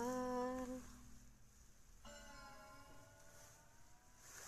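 A woman humming a tune with her lips closed: a held note at the start that fades after about a second, then after a pause a second, fainter held note from about halfway through.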